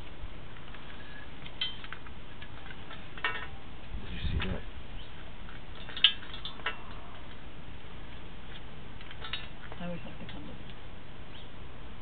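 Scattered short clicks and knocks over a steady hiss as a sewer inspection camera on its push rod is fed along a drain pipe. The sharpest click comes about six seconds in, with a duller thump just before it.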